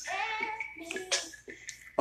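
A voice in the background, sung or spoken, with faint music under it.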